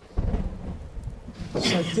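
A sudden deep rumble starts about a quarter of a second in and dies away over about a second.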